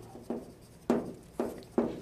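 Chalk writing on a blackboard: about four short, separate strokes.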